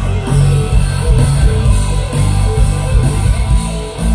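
Live rock band playing loudly: electric guitar lead runs over bass guitar and drums during the guitar-solo section of the song.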